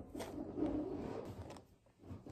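Faint rustling of small plastic zip-top jewelry pouches being handled, dying away to near silence near the end.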